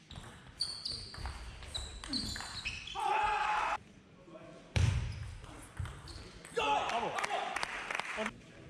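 Table tennis rally: a celluloid-type plastic ball clicking off bats and the table in quick succession, echoing in a large hall. About five seconds in comes a loud thud, and shouts follow near the end as the point ends.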